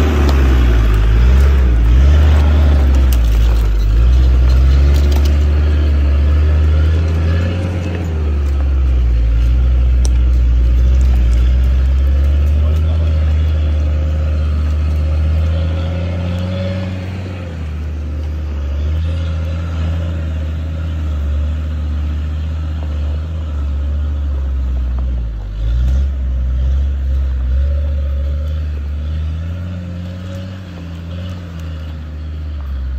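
Land Rover diesel engine working hard under load as the off-roader climbs a muddy hill track, its revs rising and falling.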